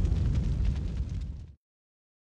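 The tail of a logo-intro sound effect: a deep, explosion-like boom fading out with fine crackling. It cuts off suddenly about one and a half seconds in, leaving dead silence.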